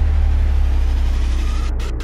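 A deep, steady low rumble with little sound above it, easing slightly near the end.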